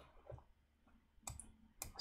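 Near silence broken by two short computer mouse clicks, a little over a second in and again just before the end.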